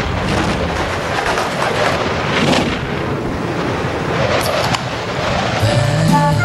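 Steady rushing wind noise of a skydiving freefall in a TV commercial's soundtrack; music comes in near the end.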